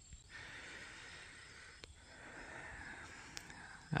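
Faint outdoor background: a quiet, even hiss with two faint clicks, one a little under two seconds in and one near the end.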